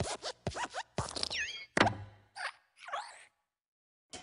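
Sound effects of the Pixar logo's hopping desk lamp: a run of quick hops with short sliding squeaks, a loud squashing thump about two seconds in as the lamp flattens the letter I, then two more brief squeaks before it goes quiet.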